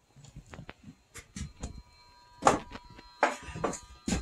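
Footsteps and scattered knocks and handling noises, with two louder thumps a little past halfway, over a faint steady high tone.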